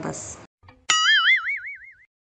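Cartoon "boing" sound effect: a sharp click, then a single wobbling tone that warbles about five times a second and drifts upward in pitch for about a second.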